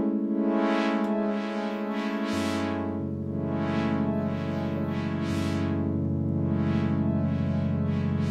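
Modal Argon8 wavetable synthesizer playing sustained chords through its long stereo delay, heard as the delayed signal only, so the repeats seem out of sync with the playing. Soft swells recur about once a second, and new low notes come in a little over two seconds in and again around five seconds.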